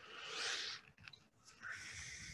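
Soft rustling close to the microphone, a single click about a second in, then more rustling near the end.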